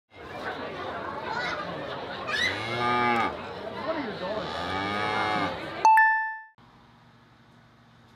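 Cattle mooing twice, two long calls over steady background noise, followed just before the six-second mark by a single bright bell-like ding that fades out quickly, then quiet room tone.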